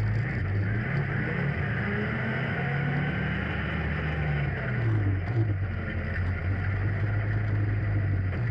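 Honda Foreman ATV's single-cylinder four-stroke engine running as it is ridden, its pitch dipping and rising a few times with the throttle, over a steady hiss.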